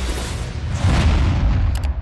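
Background music swept up by a swelling rush of noise into a deep boom, a cinematic transition sound effect. Two quick clicks come near the end.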